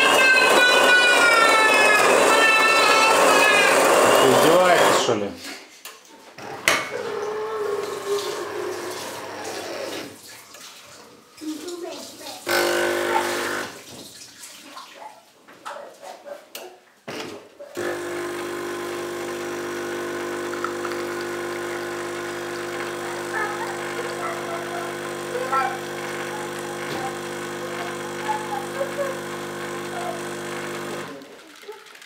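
AEG Electrolux Caffè Silenzio bean-to-cup espresso machine making a coffee. A loud motor runs for the first five seconds or so, likely the grinder. There are intermittent clicks and knocks through the middle, and a brief pump burst. From a little past halfway the pump runs steadily as espresso pours into the cup.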